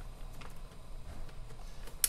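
Quiet handling sounds with a few faint ticks as a zip-top bag of pork is pushed down into a sous vide water bath to squeeze the air out, over a low steady hum.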